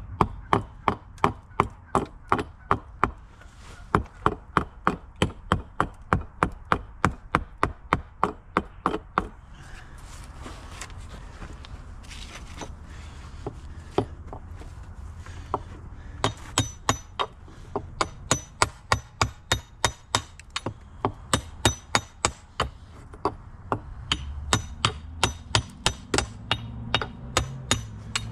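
Husqvarna hatchet chopping into a hickory handle blank, knocking out chunks of wood: a fast, regular run of sharp strikes, about three a second, easing off to a few scattered blows midway before picking up again.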